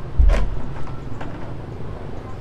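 A red plastic chair knocked over onto pavement: one sharp clatter with a heavy thump about a third of a second in, then a lighter knock about a second later.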